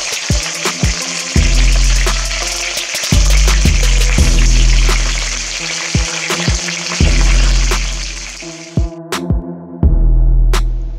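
Background music with a heavy, regular bass-drum beat, over whole rock cod sizzling in hot oil in an electric frying pan. The sizzle cuts off suddenly about a second before the end while the beat goes on.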